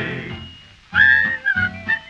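A held sung note fades out over the first half second, then about a second in a whistled melody starts, clear single high notes over a country band accompaniment with a steady beat.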